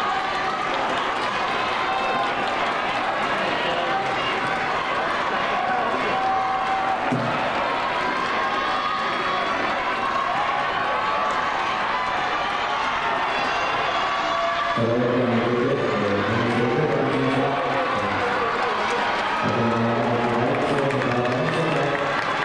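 Crowd of spectators cheering and shouting encouragement, many voices at once. Louder, fuller shouting starts about two-thirds of the way through and comes and goes.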